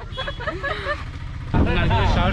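Low engine and road rumble of an open-back Mahindra Bolero pickup truck under voices; about one and a half seconds in the rumble turns suddenly much louder as the truck is under way.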